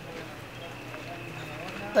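Faint background voices of a group of people talking at a distance.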